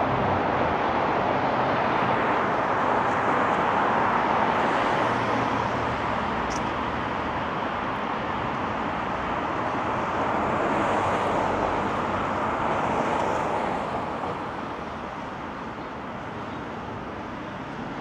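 Road traffic: cars passing on a city street, a steady hiss of tyres and engines that swells twice and then falls away over the last few seconds.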